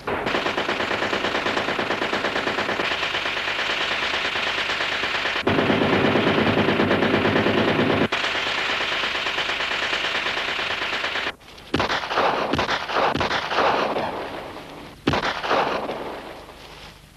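Sustained rapid machine-gun fire for about eleven seconds, followed by separate loud shots and short bursts of gunfire.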